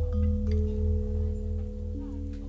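Gamelan metallophones and a large gong ringing on and slowly fading after the last struck notes of a phrase, the gong's deep hum pulsing underneath. A few soft new notes are struck near the start and again at the end.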